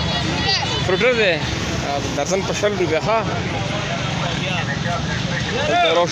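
Street-market din: several people talking over a steady low rumble of traffic and vehicle engines.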